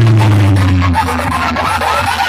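Loud DJ music played through a competition sound-box speaker rig, dominated by a heavy, sustained bass note, with a wavering, sliding sound above it.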